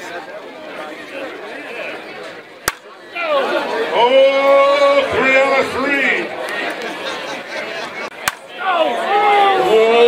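Two sharp cracks of an aluminium softball bat hitting the ball, about three seconds in and again about eight seconds in, with men's voices chattering between them.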